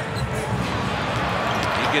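Arena game sound during live basketball play: a basketball being dribbled on the hardwood court over steady crowd noise.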